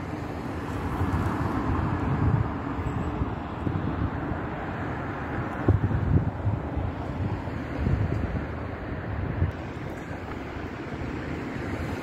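Road traffic noise, a low rumble that swells and fades, with wind buffeting the microphone.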